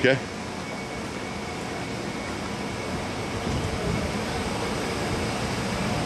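A steady rushing noise of moving air, even throughout with no distinct events.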